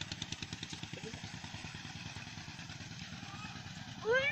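A small engine running at a steady, rapid putter, with a higher clatter on top that fades out after about a second while the low, even pulsing carries on.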